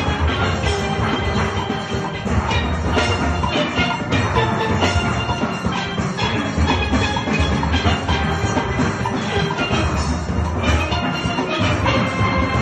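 A steel pan band playing together: chrome-bowled pans ring out struck melody notes over full-barrel bass pans, in a steady, dense rhythm.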